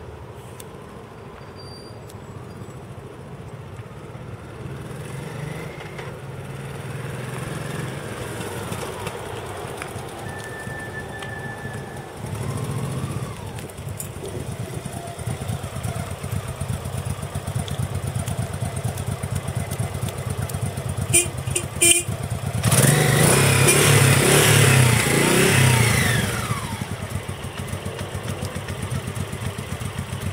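Honda NV750 Custom's V-twin engine running as the motorcycle is ridden, rising and falling in pitch and growing louder over time. A few sharp clicks come about two-thirds through. Then the engine revs loudest for about three seconds and settles back to a steady, quieter run near the end.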